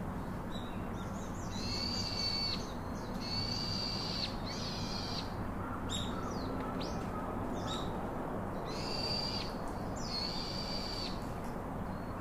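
Birds calling: a run of high, drawn-out calls, each under a second, in the first few seconds and again near the end, with a few short chirps in between, over steady background noise.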